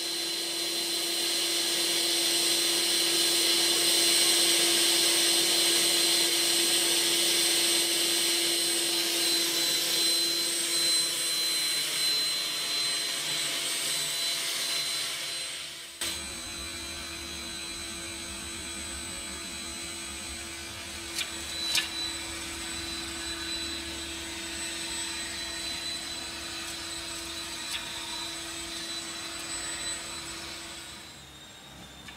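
YT6601 2 kW electric snow blower running with a steady motor whine over a rushing noise. About halfway through the sound drops to a quieter level, and a couple of sharp clicks come a few seconds later.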